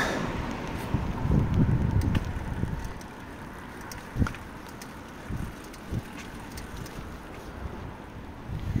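Wind gusting across the microphone: a low buffeting for the first two to three seconds that then eases to a quieter steady hush, with a few soft knocks in the calmer part.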